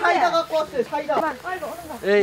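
Several people talking at once, overlapping voices of adults and children in a crowded greeting.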